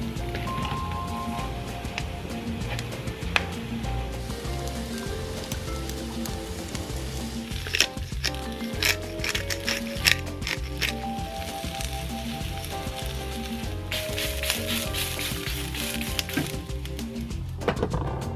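Background music with a steady beat over oyster mushrooms sizzling in oil in a frying pan. A few sharp clicks come in the middle, and the sizzling grows louder for a few seconds near the end.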